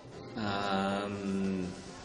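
A man's voice holding one long, level hesitation sound for just over a second before he starts to answer.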